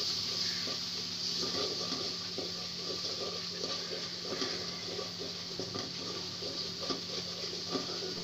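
Spice paste frying in oil in an aluminium pot, sizzling steadily, while a wooden spoon stirs and scrapes it against the pan in small irregular strokes.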